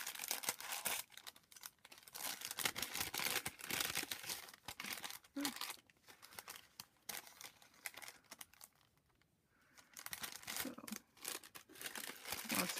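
Thin plastic gift bag crinkling and crackling as hands open it and rummage through its contents, with a brief lull about nine seconds in.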